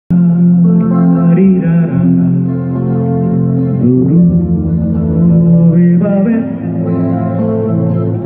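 Live band music with a male singer's voice over electric guitar and keyboard, amplified through the stage sound system; held notes with a few sliding pitch changes, playing without pause.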